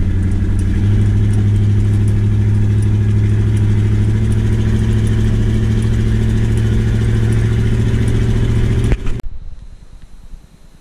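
Car engine and road noise heard inside the cabin while driving: a steady low drone that steps up a little about a second in, with faint regular clicks over it. It cuts off suddenly near the end.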